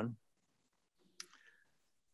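The end of a spoken word, then near silence broken by a single short, faint click about a second in.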